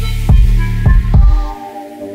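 Trap-style rap instrumental: a heavy, sustained 808 bass under several sharp kick hits, with the bass dropping out about one and a half seconds in.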